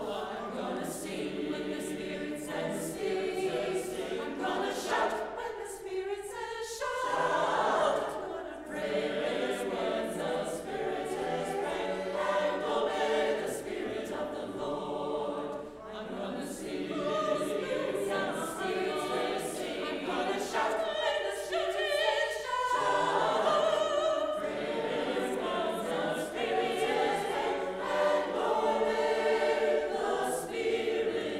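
Mixed choir of men's and women's voices singing an anthem in parts, with short breaks between phrases.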